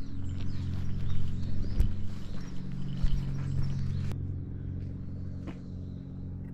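A steady low hum with a few scattered soft footsteps on stone paving.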